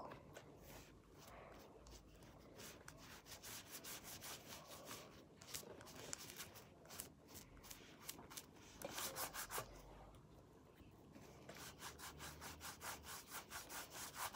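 Faint, quick, repeated strokes of a drawing tool scrubbing back and forth on paper, colouring an area in black.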